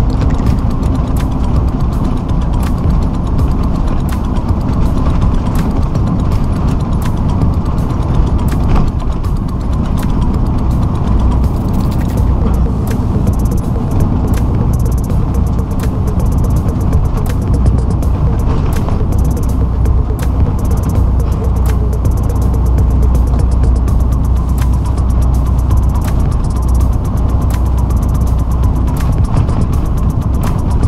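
Inside a tractor-trailer cab at highway speed: a steady low drone of engine and road noise, with frequent small clicks and rattles throughout.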